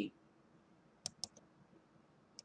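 A few quick computer mouse clicks in a row about a second in, over faint room tone.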